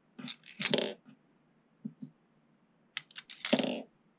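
Small metal screws clinking as they are handled and set into the holes of a water block's metal top: a cluster of quick clinks under a second in, and a louder cluster near the end.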